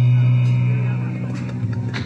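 A live band's final held low note rings on steadily and dies away in the second half, with voices coming in near the end; heard as a phone recording played back over a video call.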